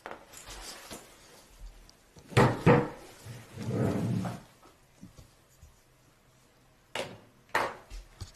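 Handling noise: a backpack and the camera being moved about, fabric rustling and rubbing. There are two sharp knocks about two and a half seconds in, a longer rubbing scrape around four seconds, and two more knocks near the end.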